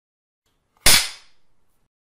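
Silence broken a little under a second in by a single sharp bang, cracking sharply and dying away within half a second.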